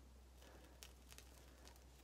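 Near silence, with a few faint ticks as a dried homemade hair-removal paste is peeled off the skin of the neck.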